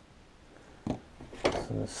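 Two short knocks about half a second apart, from tools and a wooden walking stick being handled, followed by a man starting to speak.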